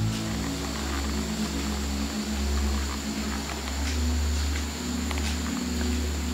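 A low, steady droning hum, with a faint, thin, high whine held above it.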